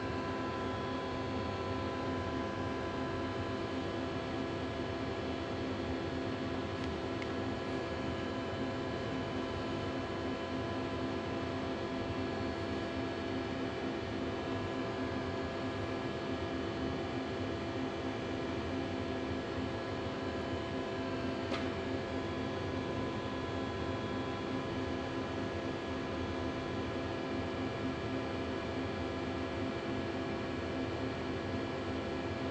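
Steady machine hum made of several steady tones, unchanging throughout, with one faint click about two-thirds of the way through.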